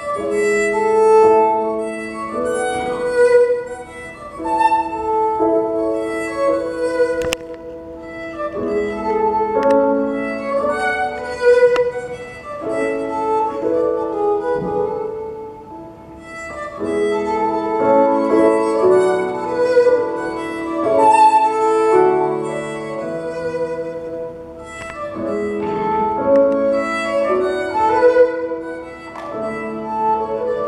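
Two fiddles playing a traditional Scottish tune together in sustained, bowed phrases of a few seconds each, striking up loudly at the very start.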